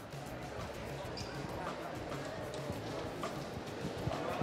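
Faint, indistinct voices and soft music, with a few light knocks.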